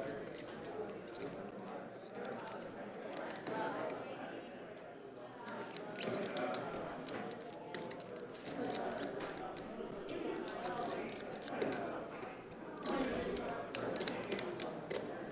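Poker chips clicking in short, scattered runs as players handle their stacks, over a low murmur of voices in the card room.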